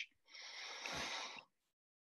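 A faint breathy exhale through the nose, about a second long, like a short quiet laugh, then the line drops to silence.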